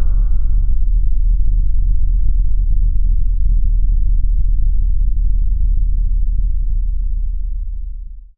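A deep, sustained sound-design rumble under the title cards. It is steady and low, its brighter upper part dies away in the first second, and it fades out just at the end.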